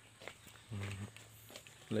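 A man's short, low voiced sound, like a hum, about a second in; otherwise quiet with a few faint ticks.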